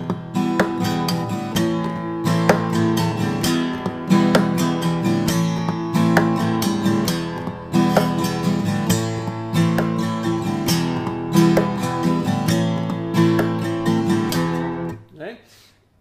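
Takamine steel-string acoustic guitar played in a looping percussive strumming pattern: thumb thumps with nail attack on the strings, a finger roll, and taps and slaps on the body between up-strums, giving sharp hits over ringing chords. The pattern stops about a second before the end.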